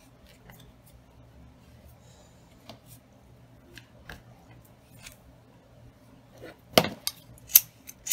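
Scissors snipping ribbon: faint small clicks of handling at first, then a few sharp snips near the end.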